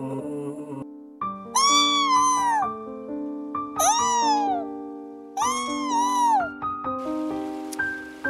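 Alpaca humming three times, each call about a second long, rising and then falling in pitch, over background music with steady mallet-like notes. A faint hiss like running water comes in near the end.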